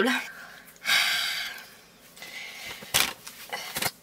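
A woman's loud breathy exhale, a huff, about a second in, then a few light clicks and rustles near the end.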